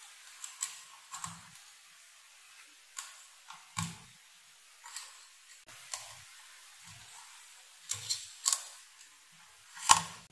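Irregular light clicks and taps, about a dozen, with the loudest just before the end, from hands handling a router circuit board and its test wires.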